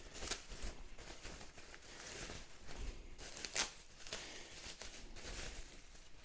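Soft rustling of plastic packaging and light clicks from small plastic model parts being handled, with two sharper clicks, one just after the start and one a little past halfway.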